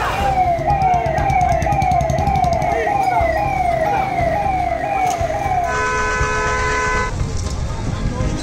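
Siren wailing in a fast repeating up-and-down sweep, about two cycles a second. About three-quarters of the way through it switches to a steady horn-like tone for a second and a half, over a low rumble.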